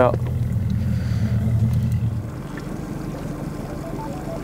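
Boat outboard motor running with a steady low hum, which drops away about two seconds in. Near the end, a few short high plinking notes at changing pitches begin.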